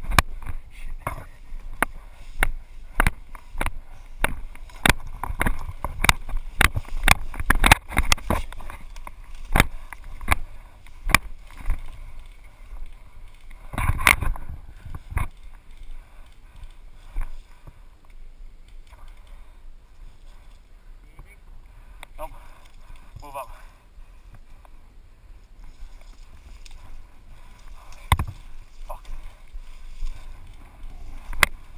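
Footsteps and rustling as a person pushes through tall grass, with frequent sharp knocks from steps and jostled gear for about the first fifteen seconds, then fewer and lighter.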